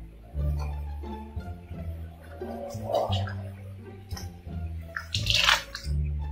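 Background music with a steady bass line, and about five seconds in a brief crackle of thin plastic film being peeled off a ready-meal tray of baked macaroni.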